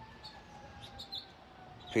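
Quiet outdoor background with a few faint, short bird chirps, over a faint thin whine that slowly sinks in pitch; a man's voice cuts in right at the end.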